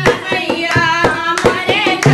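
Two women singing a Hindi devotional folk song, kept in time by sharp hand claps and light dholak strokes, with no deep drum bass.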